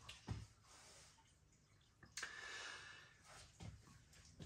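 Near silence: quiet room tone, with a faint breathy noise a little after two seconds in that lasts under a second.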